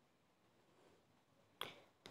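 Near silence, with one short sharp click about one and a half seconds in.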